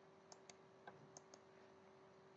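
Near silence with a handful of faint computer mouse clicks, over a faint steady hum.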